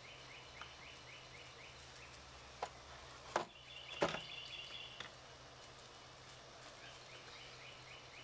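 A wooden fold-over picnic table being flipped into a bench: about four sharp wooden knocks as the tabletop is swung back into the backrest position and settles onto its frame, the loudest about four seconds in. A steady repeated chirping goes on in the background.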